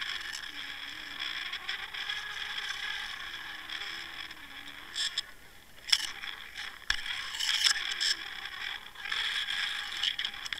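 Underwater sound picked up by a camera on a fishing rig: a steady hiss of water moving past it, with scrapes and a few sharp clicks and knocks between about five and eight seconds in, over a faint wavering low hum.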